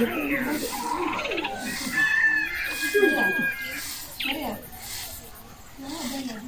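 Birds and farmyard fowl calling in short pitched calls, a few held as steady whistles near the middle. Beneath them, the soft repeated swish of a grass broom sweeping bare dirt.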